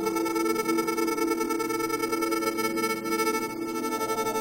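Electronic music: a steady drone of several layered, sustained tones that holds without a break.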